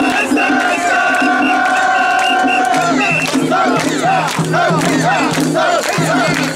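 A crowd of mikoshi bearers shouting festival calls. A long drawn-out call is held for about two seconds, then many short rising-and-falling shouts overlap one another through the rest.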